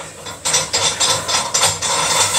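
Rapid scraping clatter, about five strokes a second, starting about half a second in.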